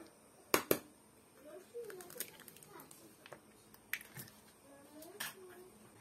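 Two raw eggs being cracked open and dropped into a bowl of grated potato: a pair of sharp cracking taps about half a second in, and single taps again near four and five seconds.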